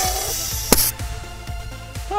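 Compressed CO2 hissing loudly as it fills a plastic soda bottle sealed with a Schrader-valve stopper, then a sharp pop about three quarters of a second in as the pressurised bottle blows off the stopper, and the hiss cuts off. Background music plays throughout.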